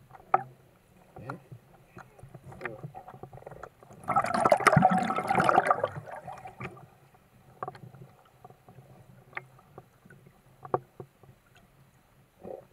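Underwater water noise heard through a camera housing: scattered clicks and pops, with one loud rush of churning water and bubbles about four seconds in that lasts around two seconds.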